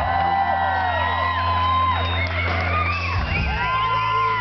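Live rock band music with electric guitar and sustained bass, with audience whoops over it; the bass note changes about three seconds in.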